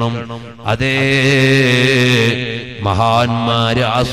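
A man chanting in a melodic, drawn-out voice into a microphone. From about a second in he holds one long steady note for roughly two seconds, then moves on to a wavering phrase.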